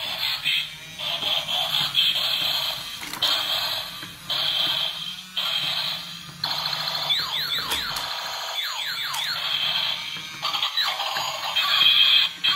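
Battery-powered transforming Bumblebee toy car playing its electronic sound effects through a small speaker as it drives and unfolds into a robot. The sound comes in short, choppy blocks, with a run of rising electronic sweeps in the middle.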